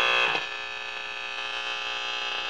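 A vintage clock radio's speaker giving out a steady buzzing hum instead of a station while its dial is turned, typical of poor reception. The buzz gets quieter about a third of a second in and then holds steady.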